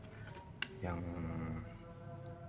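A single sharp click about half a second in as metal hand tools are handled, over faint steady background music.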